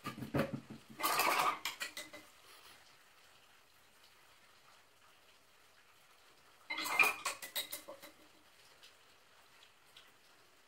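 Painting tools clinking and tapping among the supplies on the table, in two short flurries of sharp clinks: one in the first two seconds and another about seven seconds in.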